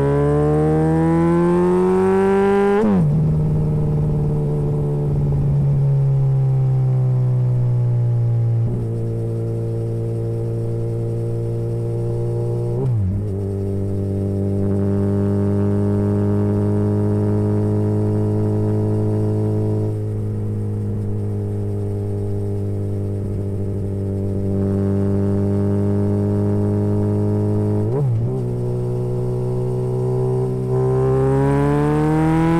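Suzuki B-King's inline-four engine and exhaust under way, with a deep note. The engine revs up in gear, then the note drops at gear changes about three seconds in, near halfway, and near the end, holding steady and climbing slowly between them.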